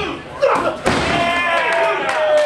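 Sharp thuds on a wrestling ring's canvas as the referee slaps the mat counting a pinfall, with live crowd voices shouting around them. Near the end one voice holds a long drawn-out shout as the pinned wrestler kicks out.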